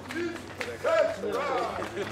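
Men's voices talking, the words not clear.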